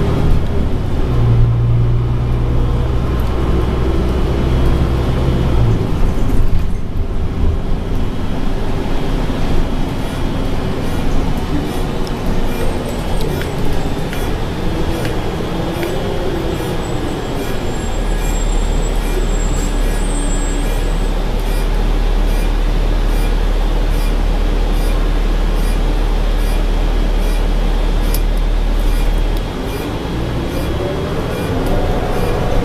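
The inside of a moving city bus: engine and road noise. A steady low drone holds through much of the second half, and pitch rises and falls a few times as the bus changes speed.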